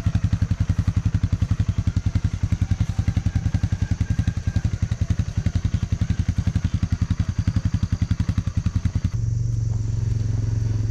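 Small off-road vehicle engine driving slowly along a trail, with a rapid, even chugging beat. About nine seconds in the chugging stops abruptly and a steady low hum takes over.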